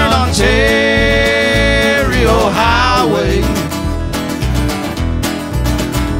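Live acoustic country song with acoustic guitar and a steady bass rhythm. A long held note near the start bends away after about two seconds.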